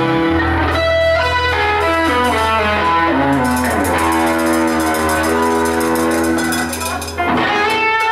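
Live band playing an instrumental passage: electric guitar lead with long held notes, some bending in pitch, over bass guitar and drums with cymbals.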